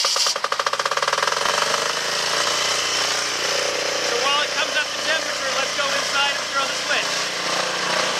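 Aurora AGI6500DE portable diesel generator just started after glow-plug preheating. It runs with a rapid, even knocking for about the first second and a half, then settles into a steady run.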